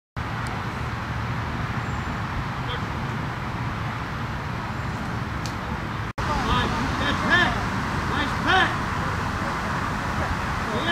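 Steady outdoor background noise. About six seconds in it changes abruptly, and people's indistinct voices talking and calling come in over it.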